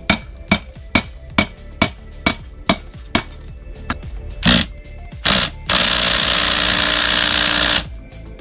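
A cordless drill runs for about two seconds near the end, driving at a badly rusted seat-track bolt on a Fiero seat frame. Before it there are sharp regular ticks about two a second, then a couple of knocks.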